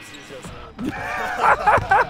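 Men talking and laughing, with a single dull thud near the end.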